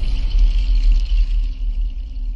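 Deep bass rumble of a TV channel's logo ident music, with a faint high shimmer above it that fades out in the second half.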